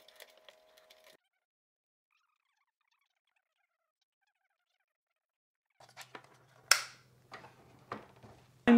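Faint clicks and knocks of a plastic Wi-Fi router and its antennas being handled on a wooden table, with a stretch of dead silence in the middle and one sharp click about three-quarters of the way through.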